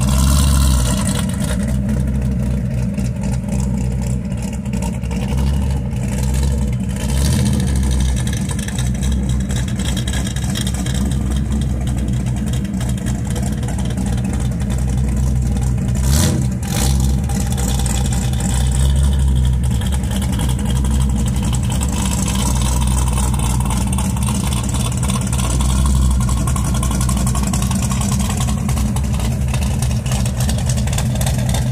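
Second-generation Chevrolet Camaro's engine idling with a steady low exhaust rumble that swells and eases a few times. A single sharp click about halfway through.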